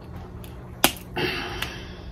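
Crab leg shell snapped by hand: one sharp crack a little under a second in, then a brief crackling as the broken shell is pulled apart.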